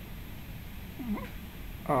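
Mostly quiet room tone with a low hum. About a second in comes one short voice-like sound that rises in pitch.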